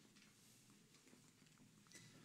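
Near silence: room tone with a few faint scattered ticks.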